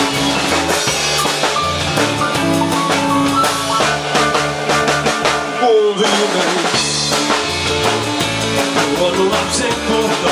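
Live rock'n'roll band playing an instrumental passage with no singing: drum kit, electric bass, hollow-body electric guitar and acoustic guitar. The bass and drums drop out briefly about six seconds in, then come back.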